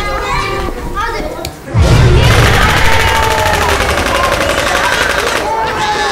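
Overlaid war soundtrack: people screaming and yelling, then, a little under two seconds in, a sudden loud blast followed by a long burst of rapid gunfire with screams over it, giving way to shouting voices near the end.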